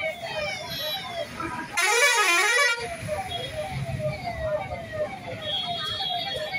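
Emergency vehicle siren wailing in a fast repeating pattern of falling tones, about three a second. A louder, wavering blast cuts in about two seconds in and lasts about a second.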